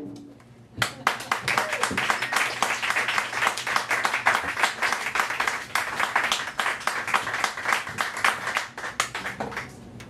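Small audience applauding in a small room. The clapping starts about a second in, runs on steadily and dies away just before the end.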